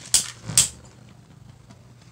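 Two Beyblade Burst tops, Cosmo Dragon and Bushin Ashura, spinning in a plastic stadium: they clash with two sharp clicks in the first half second, then spin on with a faint steady whir.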